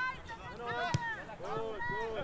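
Soccer players shouting to each other on an open field, with one sharp thud of a ball being kicked about a second in.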